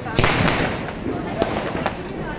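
Firework rocket in the air, going off with a sharp bang a moment in, followed by two fainter cracks later.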